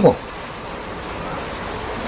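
Steady, even rushing-water noise like a waterfall, with the tail of a man's word at the very start.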